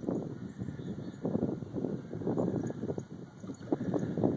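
Water splashing and sloshing in irregular bursts as a dog paddles and then wades through shallow lake water toward the shore.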